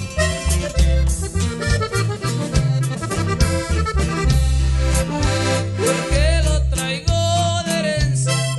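Norteño band playing an instrumental stretch of a corrido: accordion melody over guitar and drums, with a heavy, steady bass line.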